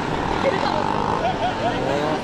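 Honda NSR250R's two-stroke V-twin engine being revved up and down repeatedly as the bike is ridden hard through tight turns, with a quick run of short rising revs around the middle.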